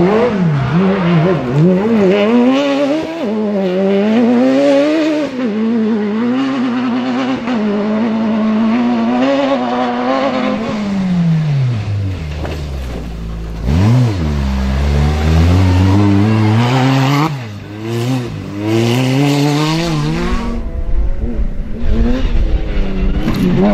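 Rally car engines revving hard up and down through the gears as cars pass one after another. About twelve seconds in, one engine drops low as the car slows, then climbs sharply as it accelerates away.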